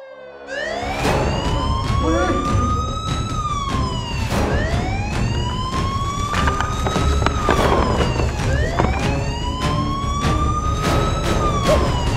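Police siren wailing: a pitch that climbs slowly for about three seconds and drops quickly, repeated three times, starting about half a second in. Under it runs a music track with a steady beat.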